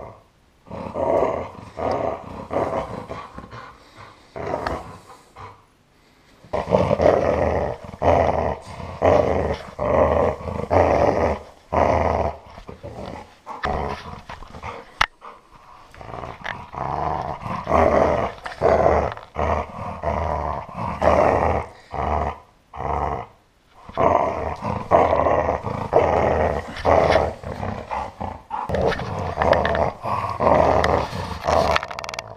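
Golden retriever growling in rough, repeated bursts while pulling on a rope toy in tug-of-war: playful growling, not aggression. A few short lulls break it up, and a sharp click comes about halfway through.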